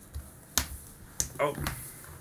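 Three sharp taps, a baby's hands slapping a hardwood floor while crawling.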